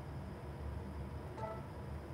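Quiet room tone with a low steady hum, and a brief faint tone about one and a half seconds in.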